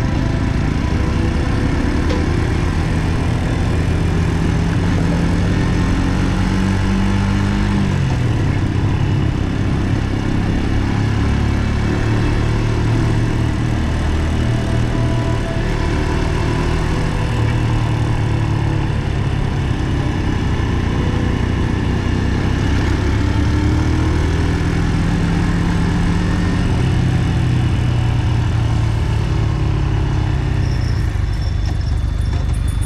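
Brixton Cromwell 125's single-cylinder four-stroke engine running on the move, with wind and road noise. The engine note climbs for several seconds, drops sharply about eight seconds in, then rises and falls again later.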